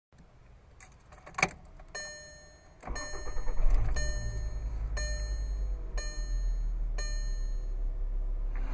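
A couple of clicks from the key, then a dashboard warning chime repeating about once a second. About three seconds in, the 2012 Volkswagen Golf's 2.5-litre five-cylinder engine cranks and starts, rising briefly before settling into a steady idle.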